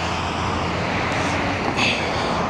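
Steady road-traffic noise from cars driving through a wide intersection.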